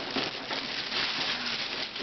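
Wrapping paper tearing and crinkling as a gift box is unwrapped by hand, a continuous papery rustle.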